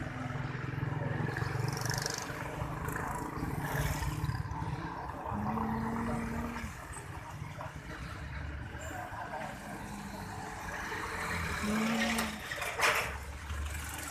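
Street ambience with a steady low rumble of traffic. A person hums short, low 'mmm' sounds a few times: about five seconds in and again near the end. A sharp knock comes near the end.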